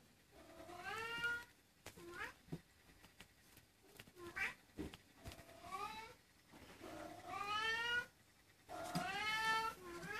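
A cat meowing again and again: about six calls, the longer ones rising in pitch and then holding, with a few short, clipped calls between them.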